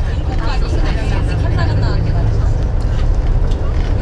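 Steady low rumble inside a moving coach bus, with faint passenger talk over it.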